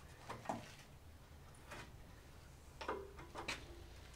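Handling noise on a handheld tile saw's aluminium guide rail: about six light clicks and knocks, spread out, with the saw's motor not running.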